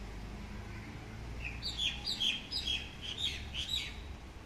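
A bird calling a quick run of short, high, falling chirps, several a second, starting about a second and a half in, over a steady low background rumble.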